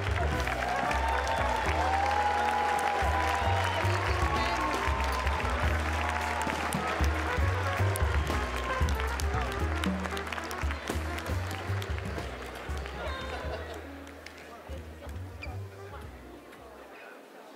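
Stage music with a heavy, stepping bass line playing over audience applause and crowd voices. It dies down over the last few seconds.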